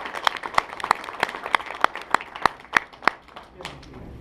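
Scattered applause from a small audience: separate claps that thin out and stop a little after three seconds in.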